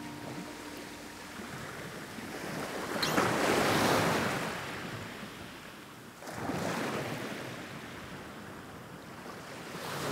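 Small waves washing onto a sandy beach, swelling and falling away about every three seconds. A last acoustic-guitar chord dies away near the start.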